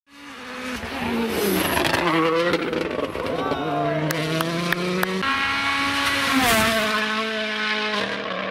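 Rally car engine at high revs along a stage, fading in over the first second, then rising and falling in pitch with gear changes and lifts off the throttle. A few sharp clicks come about four to five seconds in.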